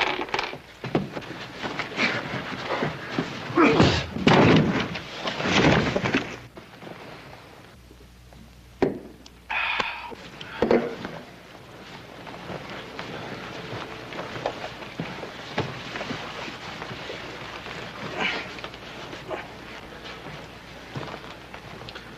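Fistfight sound effects: blows landing and bodies hitting things, a string of heavy thuds and slams, busiest in the first six seconds, with two more hits around nine and ten seconds in, then quieter.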